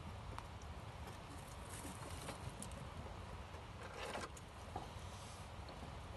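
Faint steady low rumble with a few light clicks and a brief rustle about four seconds in.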